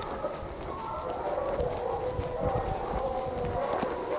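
A pack of foxhounds in full cry inside a barn, many overlapping howling voices at once, as they hunt round and round in it; the filmer and uploader take it for hounds on a fox.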